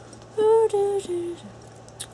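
A woman's voice wordlessly humming or vocalizing a short three-note phrase, each held note a little lower than the one before.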